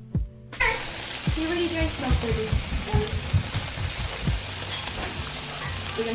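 Wagyu beef sizzling in melted butter on a hot griddle, a dense crackling that starts suddenly about half a second in and goes on steadily.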